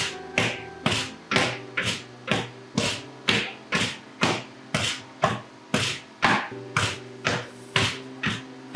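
Wooden pestles pounding booza (Arabic ice cream) in metal freezer wells, a steady beat of dull thuds about two a second from two men striking in turn; the pounding works the air out of the ice cream. Background music runs underneath.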